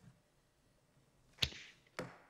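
Two sharp knocks on a desk close to a microphone, the first about a second and a half in and followed by a brief rustle, the second right at the end, over quiet room tone.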